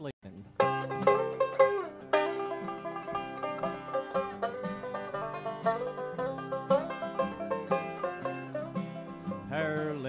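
Bluegrass five-string banjo and acoustic guitar playing the instrumental opening of a song, picked notes starting about half a second in.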